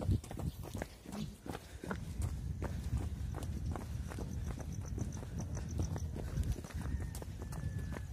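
Jogging footsteps, an even rhythm of about three steps a second, over a constant low rumble.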